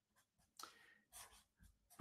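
Near silence with a few faint, brief scratches of a felt-tip marker writing on paper.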